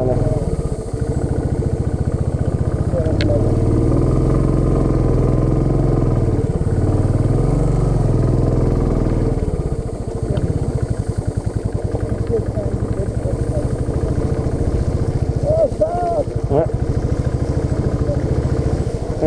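Royal Enfield single-cylinder motorcycle engine running under way at low speed, its firing pulses steady, easing off briefly about ten seconds in and then picking up again.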